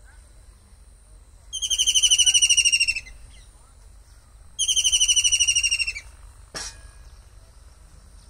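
A kingfisher calling: two loud, fast trills of evenly repeated high notes, about ten a second, each lasting about a second and a half. A single sharp click follows shortly after the second trill.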